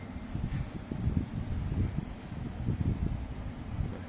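Low, irregular rumbling with soft bumps: handling noise on the recording microphone as it is moved about.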